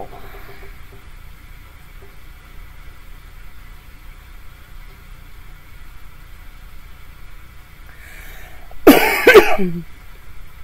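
A woman coughing twice in quick succession near the end, loud against the low, steady hum of a quiet room.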